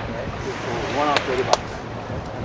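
Indistinct voices of people talking over a steady background of wind and surf noise, with two sharp clicks about a second and a second and a half in.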